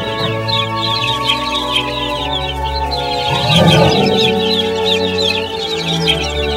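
Music with held chords throughout, with animal calls over it and a stronger call about three and a half seconds in.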